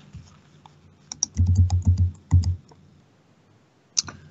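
Typing on a computer keyboard: a quick run of key clicks with soft thumps on the desk, lasting about a second and a half.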